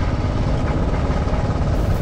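Motorcycle running steadily at riding speed, heard as an even low rumble.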